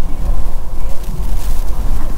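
Car on the move: a loud, uneven low rumble of road and engine noise, with wind buffeting the microphone.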